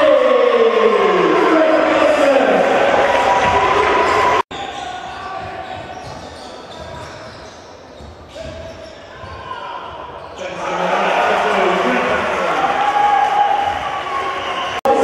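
Basketball game sound in a large hall: a ball bouncing on the wooden court amid indistinct voices of players and spectators. The sound cuts off abruptly about four seconds in, then carries on quieter before rising again near the end.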